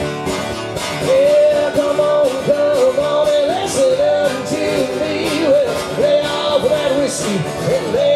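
Live acoustic country/bluegrass music: a strummed acoustic guitar, joined about a second in by a high, held sung melody line that bends slightly between notes.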